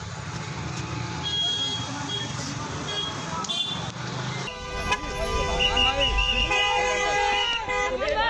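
Car horn honking, held steadily for about the second half, over a crowd of voices in a busy street.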